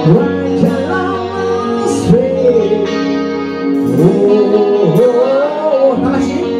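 Heavy metal band playing live: a singer holding and bending long notes over electric guitar, bass guitar, keyboard and drums, with cymbal crashes.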